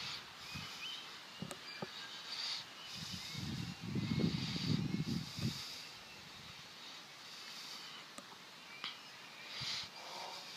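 Faint outdoor ambience with a few soft bird chirps, and a low rumble from about three to five and a half seconds in.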